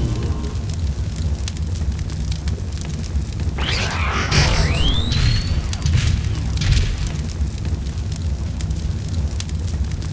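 Film sound effects: a deep, continuous rumble of booms, with a burst of noise about three and a half seconds in and a rising whistle right after it, mixed with score music.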